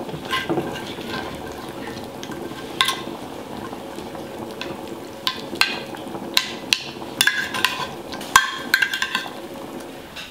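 A fork crushing and stirring roasted cherry tomatoes, garlic and pasta water in a hot ceramic baking dish. Irregular sharp clinks of metal on the dish come more often in the second half, over a faint steady sizzle from the hot sauce.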